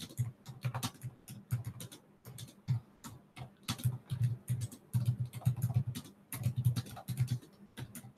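Typing on a computer keyboard: irregular runs of quick key clicks with short pauses between them.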